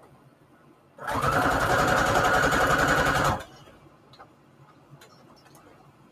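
Electric sewing machine running a short burst of rapid, even stitching for about two and a half seconds, starting about a second in and stopping abruptly. It is straight-stitching red thread through a fabric strip onto a paper index card.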